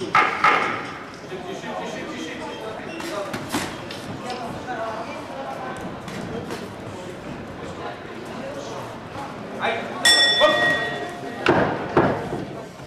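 Voices calling out from ringside over the thuds of gloved punches, then about ten seconds in a boxing ring bell rings with a clear tone for about a second and a half: the signal that ends the round.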